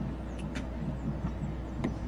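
Steady low outdoor background rumble with a few faint, sharp clicks.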